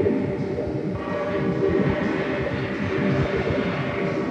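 Experimental ambient electronic music: a dense, steady drone with held tones above an irregular, grainy low end.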